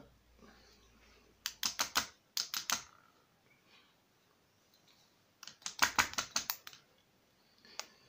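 Quick runs of small, sharp metal clicks and taps from a steel pick and pins against a brass pin-tumbler lock cylinder as it is taken apart. One run comes about a second and a half in, a denser and louder run about five and a half seconds in, and a single click near the end.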